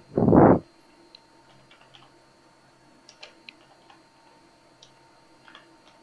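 A brief loud puff of noise in the first half second, then a few faint, scattered clicks of computer keyboard keys as a password is typed.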